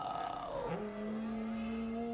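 Film soundtrack of the Knight Bus: a falling whine that settles after about half a second into a steady hum as the bus slows.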